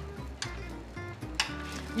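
Background music with a steady low bass, over a faint sizzle of bread in an oiled grill pan and two light clicks of metal tongs turning the slices, about half a second and a second and a half in.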